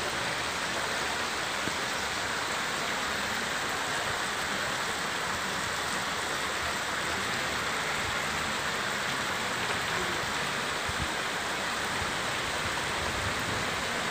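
Heavy storm rain falling steadily onto a flooded street, a constant hiss, with runoff water flowing over the road.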